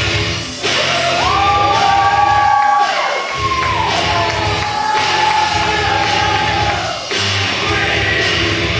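A live band playing loud rock music with a heavy beat, and a voice yelling long, sliding notes over it from about a second in until near the end.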